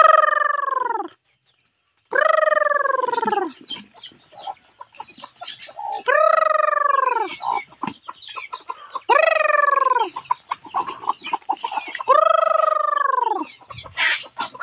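Rooster crowing five times, each crow a long call that rises and then falls away, a few seconds apart, with hens clucking softly in between.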